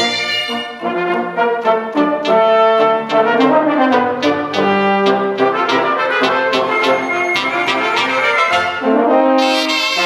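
A cobla, the Catalan wind band of reed and brass instruments with double bass, playing a sardana live, with the brass section and its trumpets to the fore in a melody of held and detached notes.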